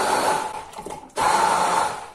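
Hand-held immersion blender running in a tall plastic beaker, puréeing a liquid sauce of oil, broth, garlic and parsley. It runs in two bursts with a steady whine: one at the start, a brief let-up, then a second from just over a second in.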